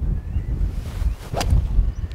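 A golf four iron striking the ball off the fairway: a single sharp click of the strike about a second and a half in. Wind rumbles on the microphone throughout.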